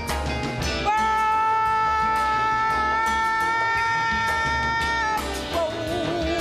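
Live small-group jazz: a woman singing with upright bass, drums, piano and saxophone. A long, steady high note is held from about a second in for some four seconds, followed near the end by a lower note with vibrato.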